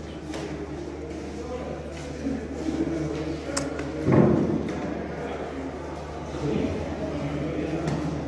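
Indistinct background voices, with a loud thump about four seconds in.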